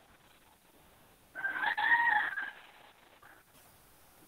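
A single animal call about a second long, starting a little over a second in, its pitch rising slightly and then falling.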